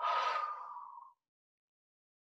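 A woman's breathy, sigh-like exhale with a faint hum in it. It lasts about a second and fades out. It is an exhale taken while rolling the spine up from a forward bend.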